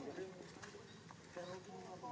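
Faint voices of people talking in the background, with a few soft clicks.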